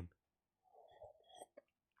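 Near silence, with a few faint mouth and mug sounds of a drink being sipped from a mug about a second in.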